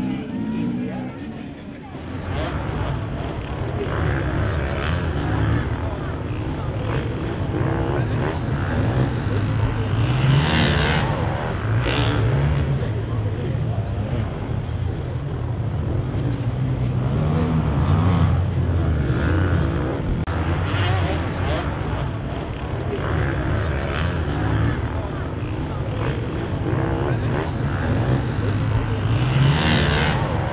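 Dirt-bike engines running, with several rising revs, over indistinct voices.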